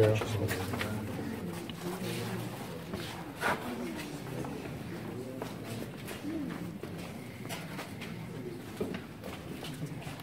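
Low, indistinct murmuring voices in an enclosed stone chamber, with a brief knock about three and a half seconds in.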